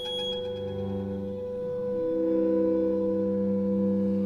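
Clarinet quintet (clarinet with string quartet) holding long, steady sustained chords in a slow, meditative passage. The harmony shifts to a new held chord about two seconds in, and it grows slightly louder.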